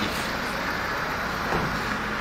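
Steady street noise with a traffic-like hum and no distinct events.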